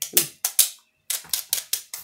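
A handful of eyebrow pencils clicking and clattering against each other and against long fingernails as they are shuffled in the hands. The clicks are rapid and irregular, about five or six a second, with a brief pause about a second in.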